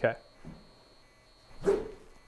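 A golf club swung one-handed through impact, heard as one short, sharp burst of sound near the end.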